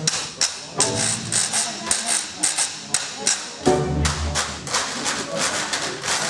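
A traditional jazz band playing an up-tempo number, with sharp percussive clicks marking the beat. Low bass notes come in strongly just past halfway.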